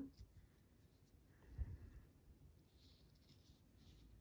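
Near silence with faint rustling and light clicks of yarn being handled and drawn through a crochet hook as a chain is made, with one soft bump about a second and a half in.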